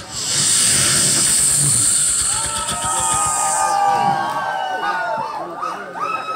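Several performers imitating sounds with their voices through stage microphones: a loud steady hiss for the first few seconds, then several overlapping long wailing tones, like a siren.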